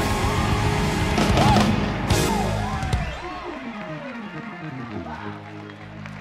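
Live gospel band finishing a song, then a Hammond B-3 organ playing a descending run from about two seconds in that settles into a held chord near the end.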